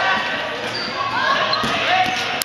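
Dodgeballs bouncing and smacking on a hardwood gym floor during a game, with players' voices and shouts over them, in a large echoing gym.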